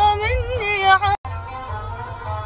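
A woman singing a slow, melismatic Arabic song, her voice winding and ornamented over a bass-heavy backing track. The sound cuts out suddenly for a moment a little past the middle, then the music carries on a little quieter.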